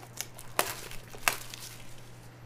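Trading cards being handled and sorted on a table: a few sharp taps of cards set down against the stacks, the loudest about halfway and a little past a second in, with light crinkling between.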